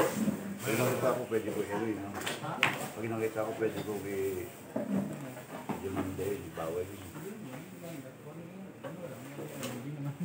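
People talking in untranscribed speech, with a few sharp clicks, the loudest right at the start.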